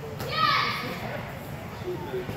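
A child's short, high-pitched kihap yell, about a quarter second in, as he performs a taekwondo technique. The pitch rises and falls over about half a second.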